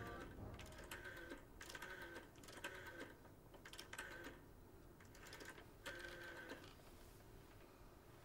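A landline telephone being dialed by hand: faint, short bursts of clicking, about five of them, each under a second long, the last about six seconds in.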